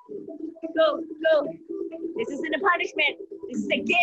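Background music with a singing voice over a low sustained note.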